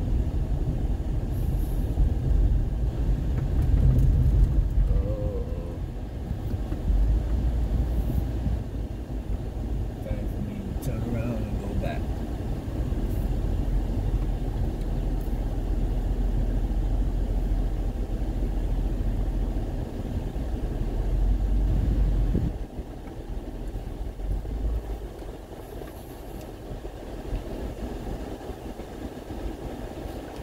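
Car's own engine and tyre rumble heard inside the cabin while driving slowly over a rutted dirt road, a steady low drone that drops noticeably quieter about three quarters of the way through as the car eases off.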